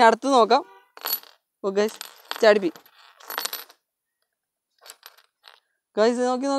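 Small metal pieces and keys clinking and dropping onto a wooden tabletop around a homemade electromagnet: a couple of short metallic jingles, then a few faint light clicks near the end. Brief wordless vocal exclamations come between them.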